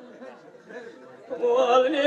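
Quiet, jumbled chatter of voices in a break in the music, then about one and a half seconds in a man's voice rises into a sung line and the pitched musical accompaniment comes back in.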